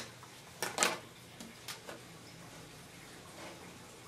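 A few light clicks and knocks as the metal back tray and plastic panels of an LCD monitor's backlight are handled and separated, the loudest about three quarters of a second in, then only faint handling.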